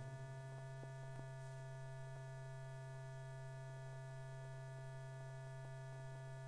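Steady electrical hum with a ladder of faint higher overtones on an old film soundtrack, with a few faint clicks.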